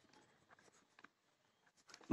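Near silence: room tone with a few faint ticks of a pen on paper.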